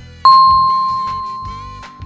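A single bright electronic ding, the quiz's answer-reveal chime, strikes about a quarter-second in and fades slowly over nearly two seconds, over a backing track with a steady low beat.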